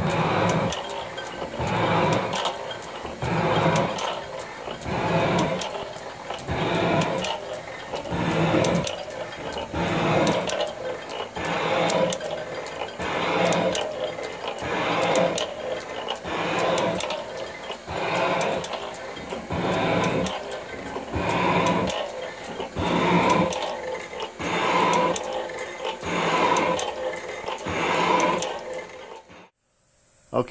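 Metal shaper taking cutting strokes through a cast iron block, the ram going back and forth about once every 1.6 seconds, each stroke a rush of cutting and gear noise. It is cutting a tenth of an inch deep with about six to seven thousandths of cross-feed, the drive belt no longer slipping. The sound cuts off suddenly just before the end.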